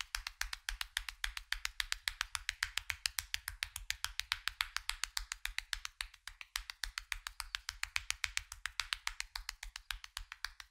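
Rapid percussive massage strikes (tapotement) by hand on bare oiled neck and shoulders: an even patter of about eight or nine sharp slaps a second, with a brief break about six seconds in.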